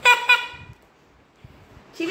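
Two short, loud, high-pitched laughs in quick succession right at the start.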